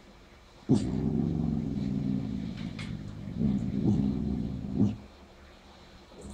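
A beagle making two long, low grumbling vocalizations, the first starting abruptly about a second in and the second following after a short pause.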